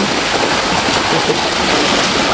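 River water pouring steadily over the edge of a weir and churning in an eddy below; the river is running high.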